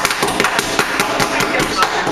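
Children slapping their hands on a wooden tabletop, a quick, uneven patter of smacks with voices chattering over it.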